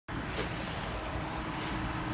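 Steady outdoor background noise, a low rumble with hiss, of road traffic and wind on the microphone.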